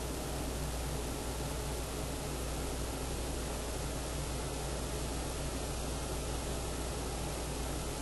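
Steady hiss with a low electrical hum underneath: the background noise of a recording microphone, with no other sound.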